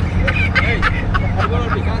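Men's voices talking in a group, over a steady low rumble.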